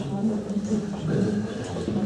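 Indistinct speech in a small room: voices talking at speaking level, with no other clear sound.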